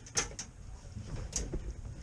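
Handling noise: two sharp clicks in quick succession just after the start and another about halfway through, over a low rumble.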